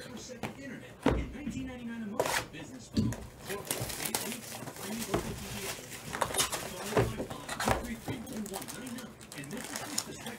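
Cardboard trading-card hobby boxes being handled and opened by hand: a string of short knocks and thunks as the boxes are moved and set down, with rustling of cardboard and wrapping as a box top is opened.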